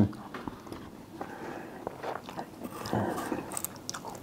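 A man chewing a mouthful of ripe Tashkent melon, with irregular soft mouth sounds and a few light clicks near the end.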